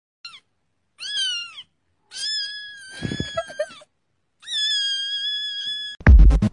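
A cat meowing four times in high-pitched calls: a short one near the start, one that rises and falls, then two long, drawn-out meows held at a steady pitch.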